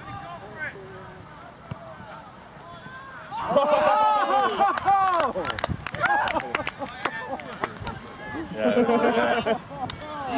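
Footballers' voices shouting and cheering as a goal goes in: a loud burst of shouts about three and a half seconds in, a few sharp knocks among them, and another burst of shouting near the end.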